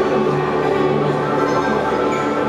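Live band music from an audience recording: a mandolin playing over steady, held chords, with no singing yet.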